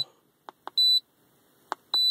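Handheld OBD-II code reader's keypad being pressed: several sharp button clicks and two short, high beeps as the scanner scrolls down its vehicle-make menu.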